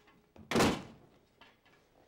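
A door slamming shut: one loud bang about half a second in that dies away quickly, with a light knock just before it.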